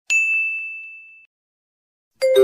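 A single bright ding, a quiz sound effect marking the correct answer, struck once and ringing out as one high tone that fades away over about a second.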